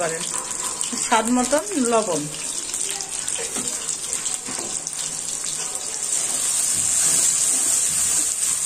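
Garlic paste and sliced tomatoes sizzling in hot oil in an aluminium kadai. The sizzle grows louder about six seconds in.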